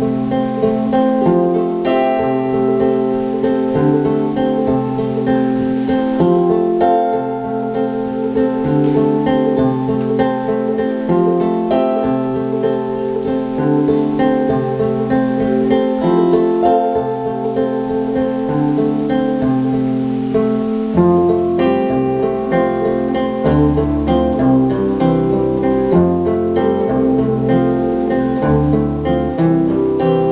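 Two acoustic guitars playing an instrumental passage of an acoustic folk-rock song, strummed and picked in a steady rhythm. Deeper bass notes join about two-thirds of the way in.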